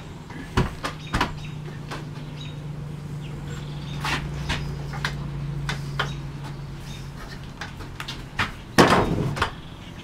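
Wooden frame parts knocking and clattering as a cornice rail and blocks are fitted onto tenons of a test-assembled case: scattered knocks, the loudest cluster about nine seconds in, over a low steady hum.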